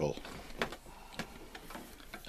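A few light metallic clicks and taps spread through a quiet stretch, as parts are handled at the mini milling machine's column while the counterbalance arm is fitted.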